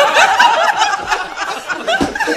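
Several people laughing and chuckling at once, overlapping, after a punchline.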